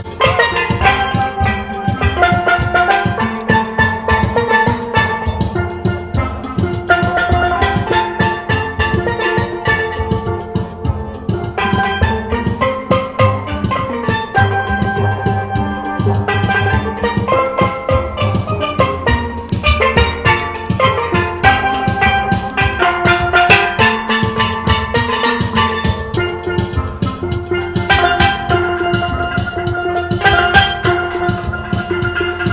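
A steel band playing live: several steel pans ringing out a melody with chords over a steady percussive beat.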